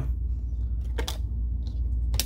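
A trading card set down on a stack of cards, one light tap about a second in, over a steady low background hum.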